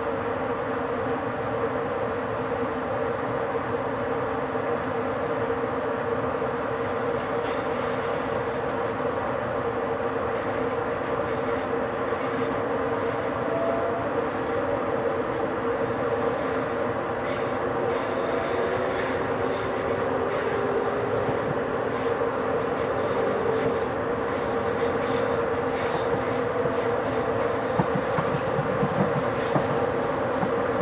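ÖBB electric InterCity train accelerating away from a station stop: a steady running hum, with wheel clicks over the track that start a few seconds in and grow denser as speed builds. A few heavier knocks near the end as the wheels cross points.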